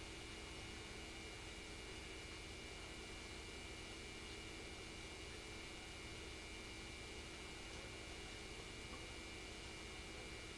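Steady hiss and low hum of the recording's background noise, with faint steady tones and no distinct sounds.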